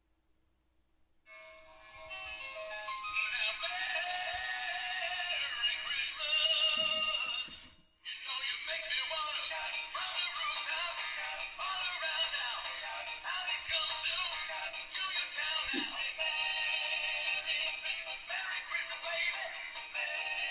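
Singing, dancing Santa hat playing its built-in Christmas song through a small speaker, with a thin, bass-less sound. The song starts about a second in, just after the hat's button is pressed, and breaks off briefly near eight seconds.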